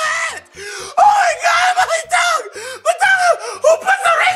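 A person screaming in a high, strained voice: a run of short wailing cries with brief breaks between them.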